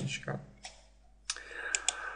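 Computer mouse clicks: a single click about half a second in, then a quick pair of clicks near the end.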